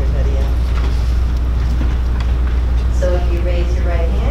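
Steady low hum throughout, with a faint hubbub of a room behind it and a voice starting to speak near the end.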